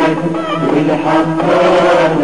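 Music: an Arabic song with voices chanting together in held, sung notes over instrumental backing.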